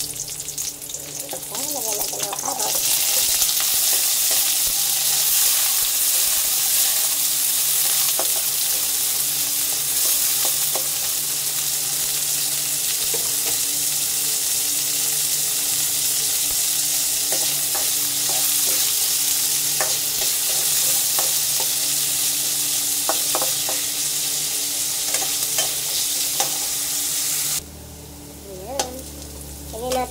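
Onion, garlic and sliced carrots sizzling in hot oil in a wok, stirred with a metal spatula that clicks and scrapes against the pan. The sizzle comes up loud about two seconds in and cuts off suddenly near the end.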